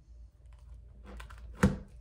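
Tarot cards being handled: a few light clicks of the cards, then a louder sharp slap about one and a half seconds in as a card is laid down on the table.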